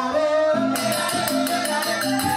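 Balinese genjek music accompanying a joged dance: a group of men's voices singing over a quick, steady rattling percussion beat.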